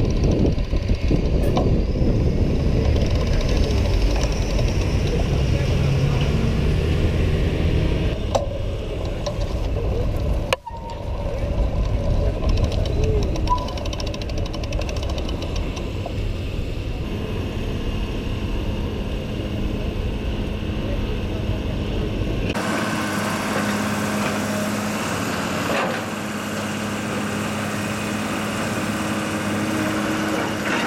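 City street noise with passing traffic and a low rumble of wind on the microphone. About two-thirds of the way in it cuts abruptly to the steady hum of a Caterpillar excavator's diesel engine running.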